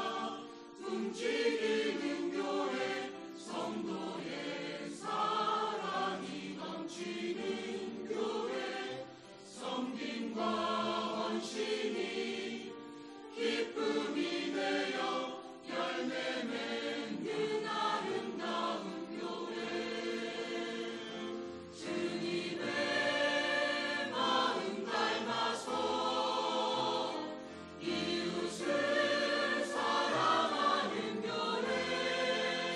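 Mixed church choir of men's and women's voices singing a sacred song in parts, in phrases with short breaks between them.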